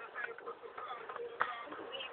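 Faint, indistinct voices, with a single short knock about one and a half seconds in.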